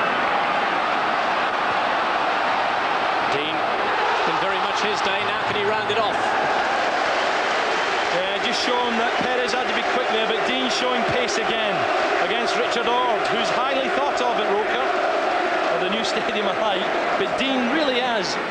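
Football stadium crowd: a steady din of many voices shouting and calling together, with sharp claps scattered through the second half.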